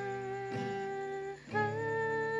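A woman sings a long held note over acoustic guitar strumming. The note breaks off about a second and a half in, and a new, slightly higher note begins.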